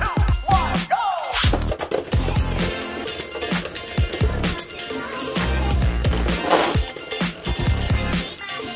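Beyblade Burst spinning tops launched into a plastic stadium about a second in, then spinning on its floor with a steady whirr and clacking sharply against each other and the stadium wall many times.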